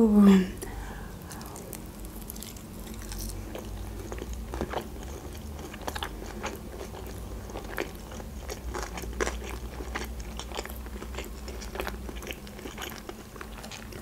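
Close-up chewing of a mouthful of sushi roll with fish, cheese and cucumber inside: many small, irregular wet mouth clicks and squelches.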